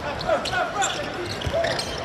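A basketball being dribbled on a hardwood arena court: short, sharp bounces over a steady arena background.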